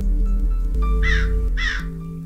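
A bird gives two short calls about half a second apart, over soft ambient background music.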